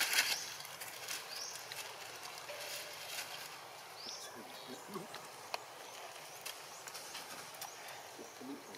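Crackling and rustling of dry leaves as macaques move over a leaf-strewn rock, loudest in a brief burst at the start, with a short high rising chirp heard a few times.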